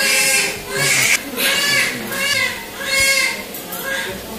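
A newborn baby crying just after birth: about five cries in four seconds, each rising then falling in pitch.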